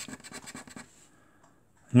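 A scratchcard's scratch-off panel being scraped in quick short strokes with a small silver scraper, the scraping stopping about a second in.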